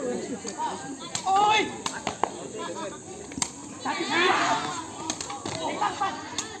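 Sepak takraw ball being kicked back and forth in a rally, several sharp smacks spread across the few seconds, with spectators shouting and yelling, loudest about two-thirds of the way through.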